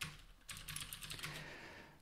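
Faint typing on a computer keyboard: a click at the start, then a short run of quick keystrokes.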